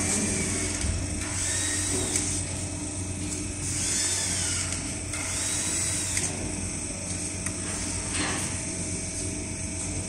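Steady hum of a leather lamination machine, with several hissing, scraping sounds about a second long as leather pieces are laid on its work frame and slid into place, and a couple of sharp clicks near the end.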